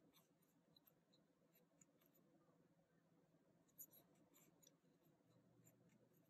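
Near silence with faint scattered ticks and small scratchy sounds of a metal crochet hook working cotton thread in single crochet, with one slightly louder click a little before four seconds in.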